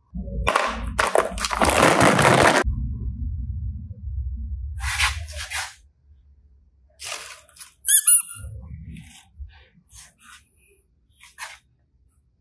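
Plastic toys being handled close to the microphone: a loud rustling, knocking stretch at the start, then scattered clicks and knocks, with a brief high squeak just after eight seconds in.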